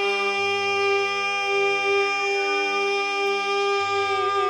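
Carnatic classical music in raga Kalyani: a single long note held steady, with no ornamentation, before the wavering gamaka ornaments resume.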